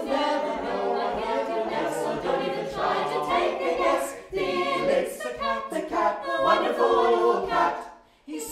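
A mixed choir of men's and women's voices singing unaccompanied in close harmony. The voices dip briefly about four seconds in and break off right at the end.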